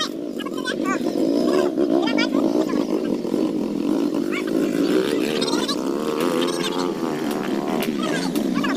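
Small trail motorcycle engine revving hard under load on an uphill climb, its pitch wavering up and down as the throttle is worked.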